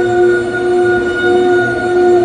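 Audio output of a crystal radio fitted with an audio-out cable: a steady, loud droning tone with evenly spaced overtones. It is interference picked up from the computer screen in front of it, which changes as windows are moved on the screen.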